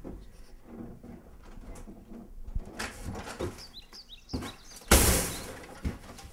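Cabin door opening with scattered knocks and a few short high squeaks, then a loud bang about five seconds in that dies away over half a second.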